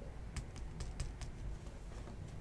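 Computer keyboard being typed on: a scattering of faint, irregular key clicks.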